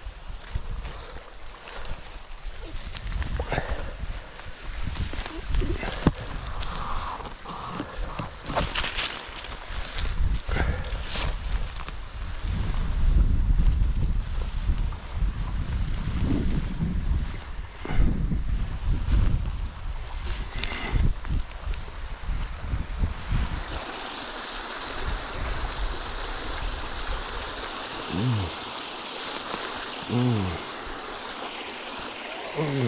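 Bracken fronds brushing and rustling against the body and a pole-mounted GoPro microphone while someone pushes through dense ferns, with irregular low handling rumbles and knocks on the mic. About 24 seconds in, a steady rushing hiss of running water takes over.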